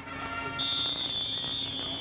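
A referee's whistle blown in one long, steady, high-pitched blast that starts about half a second in, over a faint low steady hum.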